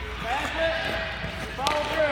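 Young children's voices calling out on a hockey rink, with a sharp clack of a hockey stick striking a puck on the ice about one and a half seconds in.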